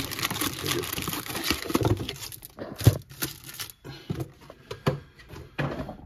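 Wrapped trading-card packs crinkling and rustling as they are taken out of their box, a dense crackle for the first two seconds or so, then a few separate knocks and rustles as the packs are stacked on the table.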